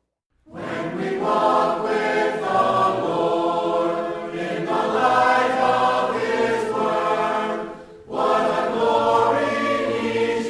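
A choir singing, starting about half a second in, with a short break between phrases near the end.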